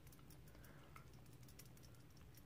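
Near silence: faint room tone with a scatter of very faint light ticks.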